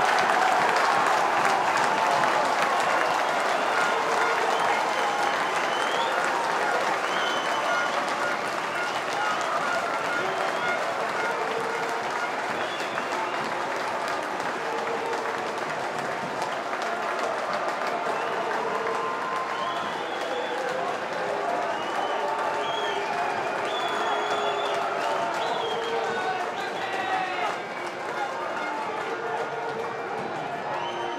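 Football stadium crowd cheering and applauding a home goal, loudest at the start and slowly dying down, with scattered shouts rising out of the noise.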